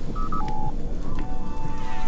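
Three short electronic beeps of a sci-fi control panel, two quick high ones and then a lower one, like a keypad being pressed. Just after a second in, a soft held tone of background music comes in.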